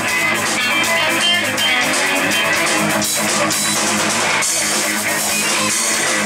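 Rock band playing live: electric guitars, bass guitar and a drum kit, with no singing.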